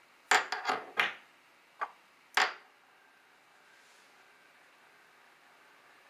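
Stainless steel ForeverSpin top clicking against its metal-rimmed spinning base as it is twirled and set going: about six sharp clicks in the first two and a half seconds. Then a faint steady whir as the top spins on the base.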